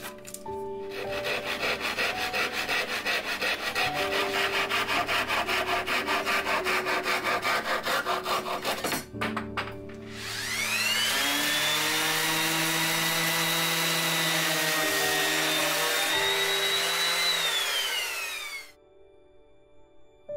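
Hand saw cutting through a plywood shelf with quick, even strokes, about four a second, sawing off a corner at an angle. About a second after the sawing stops, a power tool motor spins up, runs steadily for about seven seconds, and winds down as it is switched off.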